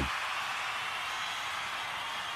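Steady hiss with no speech or music, the noise floor of the voice recording.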